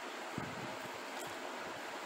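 Steady whooshing hiss of a room fan running, with a faint soft bump about half a second in.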